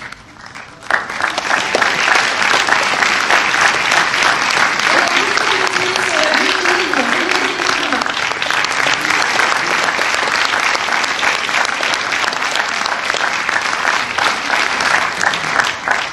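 Audience applauding, a dense steady clapping that starts about a second in and keeps going.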